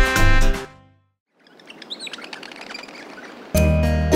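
Band music stops about a second in. After a brief silence comes soft outdoor ambience with several quick bird chirps, and a new children's song starts near the end.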